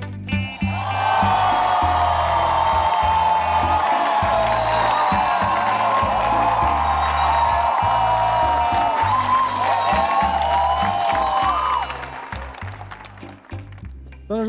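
Studio audience applauding and cheering over music with a steady bass line; the crowd noise dies away about two seconds before the end, leaving the music.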